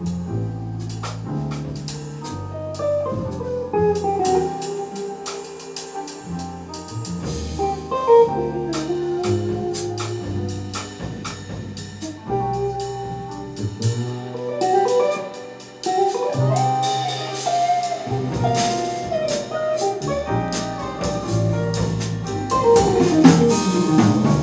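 Small jazz band playing live: a double bass plucked in a walking line, with drum cymbals and a moving melody over it.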